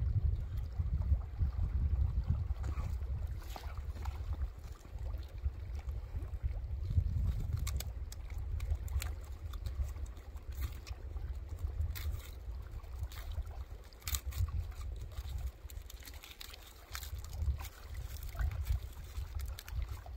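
Wind buffeting the microphone, a steady low rumble that eases somewhat near the end, with scattered small clicks and crackles from hands working dry birch bark and tinder.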